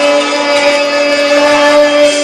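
Live music in a venue: one long, steady note held unchanged, loud and without wavering.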